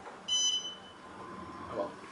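A single high electronic beep from an Otis Series 5 elevator's signal, lasting well under a second, starting about a quarter second in. A faint voice follows near the end.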